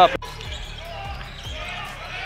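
Basketball dribbled on a hardwood court, a low bounce about every half second, with faint voices in the gym behind it. There is a brief dropout in the sound just after the start.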